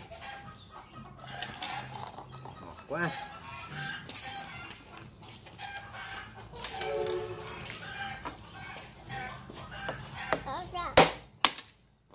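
Chickens clucking on and off. Near the end, two sharp knocks of a cleaver striking a wooden chopping block are the loudest sounds.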